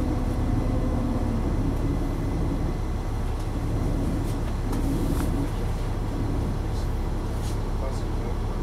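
Interior of a 2004 Neoplan AN459 articulated transit bus: its Caterpillar C9 diesel engine runs with a steady low hum while the bus sits almost still in traffic, edging forward slightly near the end, with a few faint cabin rattles.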